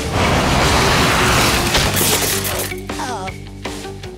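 Cartoon sound effects: a long rushing whoosh from a cannon-fired net flying through the air, ending in a crash with a breaking sound about two seconds in. Background music follows.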